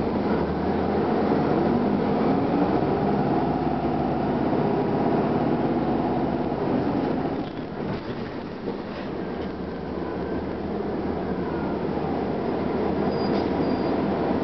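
Detroit Diesel Series 50 four-cylinder diesel engine of a 1999 Gillig Phantom transit bus, heard from inside the cabin as a steady drone under way. It eases off about seven seconds in, then picks up again.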